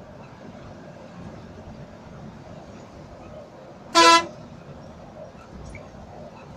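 A bus horn sounds one short, loud blast about four seconds in, over the steady hum of engine and road noise inside the cab of a Volvo B9R coach at highway speed.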